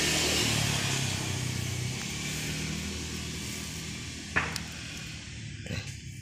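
Hum and hiss of a passing motor vehicle, fading steadily away. A single sharp click about four seconds in.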